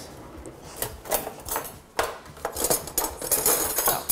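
Metal cutlery clinking and rattling in a kitchen drawer as a knife is picked out. The clicks are scattered at first and then come thick and fast in the second half.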